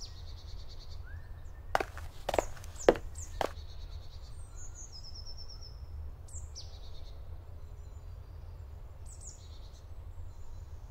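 Small forest birds chirping and calling on and off over a low steady rumble. Four sharp knocks come about two to three and a half seconds in and are the loudest sounds.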